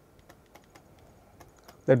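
Faint, irregular light taps and clicks of a stylus writing on a tablet screen, several over the span. A man's voice comes in near the end.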